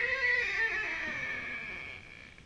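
A man's mouth-made mimicry of an animal call, done with a hand cupped over the mouth: one drawn-out high note that sinks in pitch and fades away.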